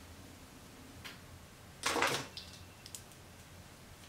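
A few faint, sharp clicks of a plastic hair clip being handled and fastened while sectioning hair, over quiet room tone.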